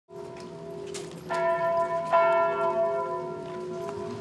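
Church bell ringing. It is struck afresh about a second and a quarter in and again about two seconds in, and each stroke rings on and slowly dies away.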